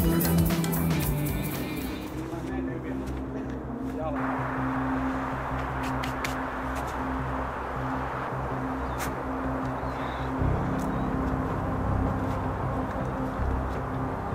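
Background music that fades out about two seconds in, leaving a steady low outdoor hum.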